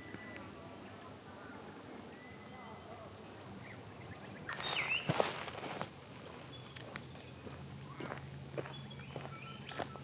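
Footsteps on grass as a person walks past, a string of soft irregular steps in the last few seconds over quiet outdoor background. A brief louder sound with a short high chirp comes about five seconds in.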